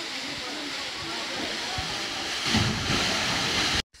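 Waterfall rushing, a steady wash of falling water that grows louder and heavier about two and a half seconds in.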